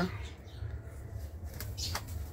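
A young rooster flapping his wings, a few quick rustling flaps near the end, over a steady low rumble.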